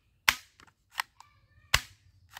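Plastic toy rifle being fired: a series of sharp cap-gun-like snaps, the first and last loudest, with a softer snap and a few small clicks between them.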